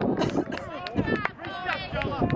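Several voices calling out and talking over one another across an open soccer field, none of them close to the microphone.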